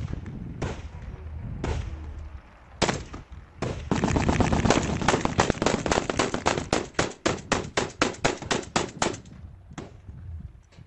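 Rifle gunfire: a few separate shots, then from about four seconds in a long run of rapid shots at about five a second, which stops about nine seconds in.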